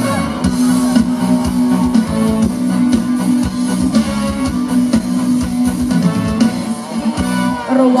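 Live band playing an instrumental passage: guitar over a steady bass line and drum beat, with the singer coming back in right at the end.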